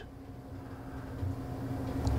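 Room tone of a meeting chamber heard through the microphone system: a steady low hum and rumble with no speech, growing slightly louder toward the end.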